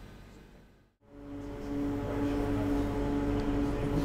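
The sound fades out to near silence about a second in, then a steady hum with a few held tones fades in and stays level.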